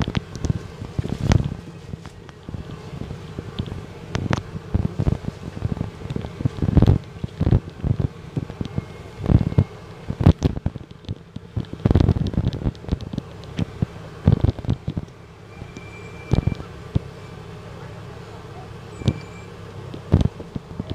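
A double-decker bus on the move, heard from inside: the engine runs steadily under frequent knocks and rattles, with voices in the background. A few short high beeps sound in the second half.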